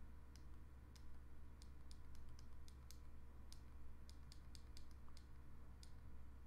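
Faint, sharp clicks of the Ledger Nano S hardware wallet's two push buttons being pressed over and over at an uneven pace, about two a second, as the PIN code is entered on the device.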